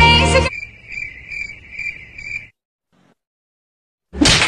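A cricket chirping: a steady run of short, high, evenly spaced chirps for about two seconds, right after a song cuts off. Then silence.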